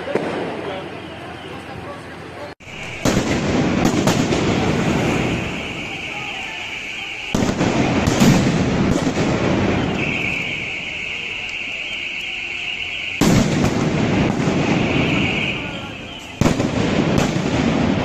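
Loud explosive bangs going off every few seconds over a din of shouting voices, with a steady high-pitched whine in long stretches between them.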